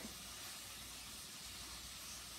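Faint steady hiss: room tone with no distinct sound.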